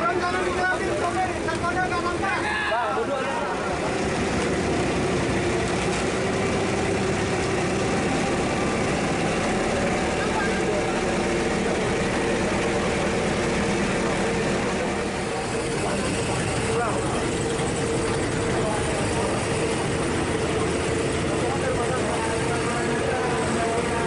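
Passenger boat's engine running with a steady hum, with indistinct voices of people aboard.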